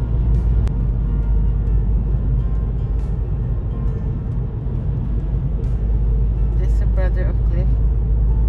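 Steady low road rumble of a car being driven, heard from inside the cabin. A brief voice sounds for a moment near the end.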